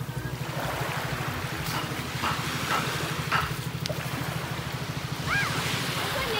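A small engine running steadily with a fast, even throb, over small waves washing on the shore.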